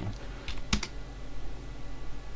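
A few quick keystrokes on a computer keyboard, bunched together between about half a second and one second in, as a number is typed into a field.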